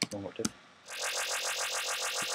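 Dubstep growl bass synthesised in NI Massive, run through a single frequency shifter with distortion and a 7 Hz tremolo, playing one held note from a little under a second in. It sounds bright and buzzy with little low end, and a fast, even flutter runs through it.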